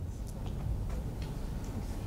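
Lecture-hall room tone in a pause: a low steady hum with a few faint, irregular ticks.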